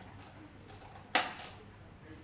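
A single sharp plastic click about a second in as a light module is pressed into a round plastic Mood light-fitting accessory, over faint room tone.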